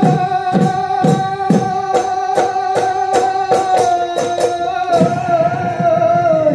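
Assamese Bihu music: a long steady held note over dhol drum strokes that quicken into a roll, ending on a stroke about five seconds in. After that a wavering note carries on.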